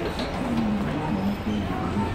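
Indistinct, faint talking in the background over steady shop room noise.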